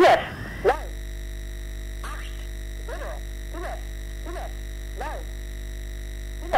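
Shortwave reception of an East German numbers station. A German voice finishes a spoken digit, then there is a pause of steady hum and faint whistling tones from the radio signal. Five faint, garbled voice syllables break through the noise at intervals of about a second.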